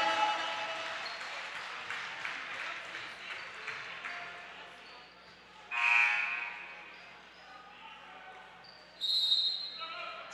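Basketball gym during a stoppage in play: crowd and bench chatter with a basketball bouncing, and two short, loud, high-pitched sounds about six and nine seconds in. The second is a steady whistle-like tone.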